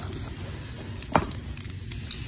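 Plastic twist fidget toy of linked curved segments (a Tangle-style toy) being handled and twisted, giving a few soft clicks, one sharper about a second in.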